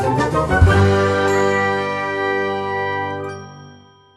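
Outro chime jingle: a quick cluster of struck notes, then a held ringing chord that slowly fades out near the end.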